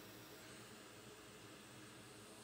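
Near silence: faint steady room tone with a low hiss and hum.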